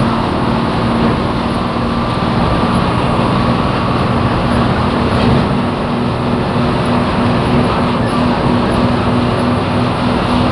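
Bus engine and road noise heard from inside the cabin while driving at speed: a loud, steady drone with a low engine hum that takes on a slight pulsing about halfway through.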